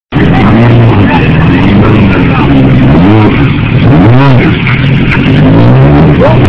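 Sport bike engine running with throttle blips: the revs rise and fall sharply about three seconds in and again about a second later, settling back to a steady idle between.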